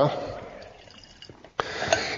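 Faint liquid sounds from oil and water in a glass separatory funnel, fading away, then a short sudden burst of noise near the end.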